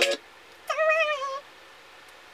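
A cat meowing once: a single call of under a second that falls slightly in pitch at its end.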